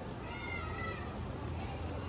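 Busy pedestrian street with a steady murmur of voices, and one short high-pitched cry, lasting about half a second, about half a second in.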